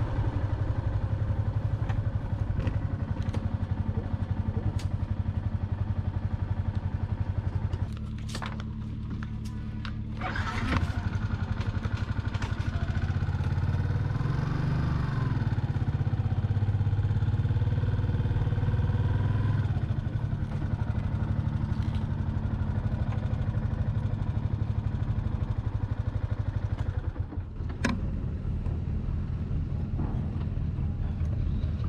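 Motorcycle engine running at low speed and idling, with a steady low pulsing hum. It drops quieter for a couple of seconds about a third of the way in, then runs louder again.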